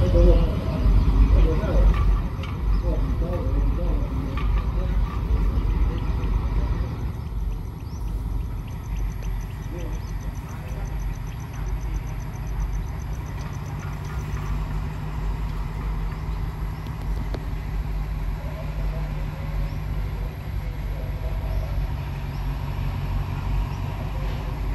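Diesel locomotive engine running, loudest over the first several seconds, then settling to a steadier, lower drone with a constant hum.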